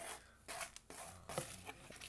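Irregular rustling, crinkling and tearing of paper and cardboard packaging being handled, a string of short scratchy strokes.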